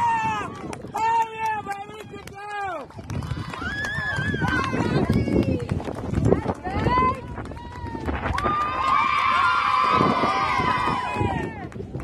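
Softball players shouting and cheering in high-pitched voices as they celebrate runs scored. Several voices overlap, and the cheering is thickest near the end.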